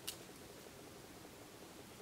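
Near silence: quiet room tone, with a faint click or two at the very start.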